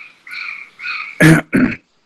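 A person coughing twice in quick succession, sharp and loud, about a second and a quarter in, after a few short, evenly paced higher-pitched sounds.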